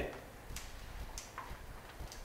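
A few faint, irregular short ticks over a low room rumble.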